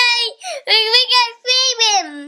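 A young boy singing in a high sing-song voice, in three short phrases with brief breaks, the last one sliding down in pitch near the end.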